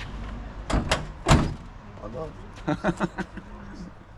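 Sheet-metal knocks from the bonnet of a 1985 BMW 3 Series (E30) as it is pushed and tugged at the front: three knocks in quick succession, the last the loudest.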